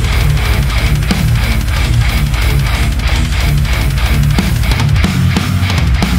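Death metal band playing an instrumental passage: heavily distorted electric guitar and bass on a fast riff over rapid, evenly spaced drumming, with no vocals.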